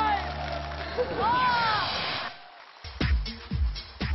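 Excited whoops and shouting over crowd noise, cut off abruptly a little past two seconds in. Then an electronic dance track with a heavy kick drum, about two beats a second, starts near the three-second mark.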